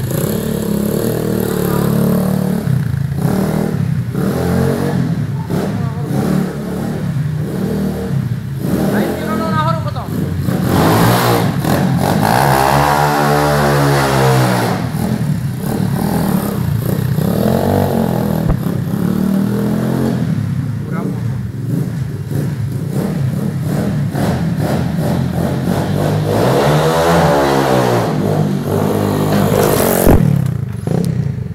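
Small dirt bike engines running and being revved inside a large hall. There are two long revs, one around the middle and one near the end, each rising in pitch and then falling away.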